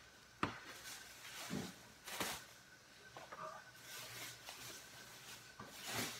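Faint off-camera handling noises as grocery bags are fetched: a sharp click about half a second in, a short rustle around two seconds, and a few quieter knocks.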